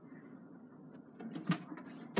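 Quiet room tone, then faint handling noises and a single sharp click about one and a half seconds in.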